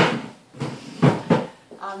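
A sharp bang with a short ring-out, then two duller knocks about a second later, a quarter of a second apart.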